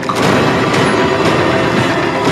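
Horror film trailer sound design: a loud, dense, steady wall of noise with no speech.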